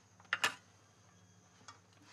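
Quiet room tone broken by two short clicks close together about half a second in, and a faint tick near the end.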